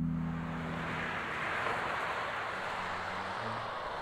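A steady rushing noise, with a held music chord fading out during the first second.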